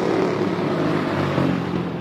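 Street traffic noise: a steady rush of passing vehicles with a low engine hum, easing slightly near the end.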